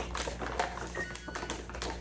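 Scattered light clicks and taps from handling things in a kitchen, with a faint brief tone about a second in.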